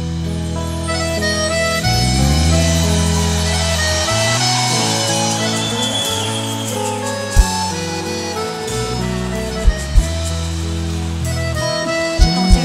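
Live forró band playing held chords with accordion over a steady bass, with a few sharp drum hits about seven and a half and ten seconds in.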